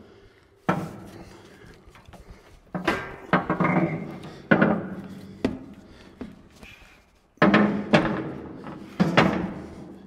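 Steel cargo basket with tacked-on square-tube legs clanking and knocking against the Jeep as it is set in and shifted into place: a series of sudden metal knocks, each with a short ringing tail, with scraping between.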